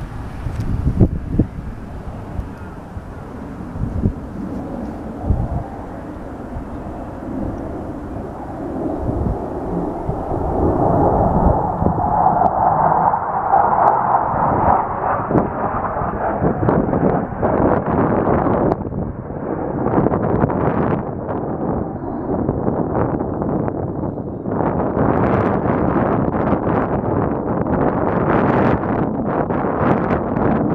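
Jet noise from Blue Angels F/A-18 Hornets passing overhead in formation: a rushing jet sound that swells about ten seconds in and stays loud, easing briefly twice. Wind buffets the microphone throughout.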